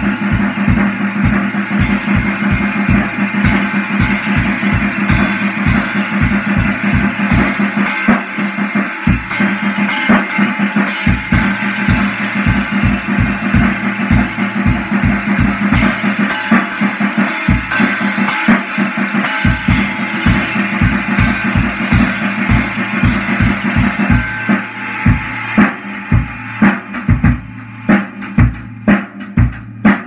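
Acoustic drum kit played with a steady bass-drum beat and cymbals, along with music that includes guitar. About 24 seconds in, the backing thins out and the drum hits stand out, spaced apart.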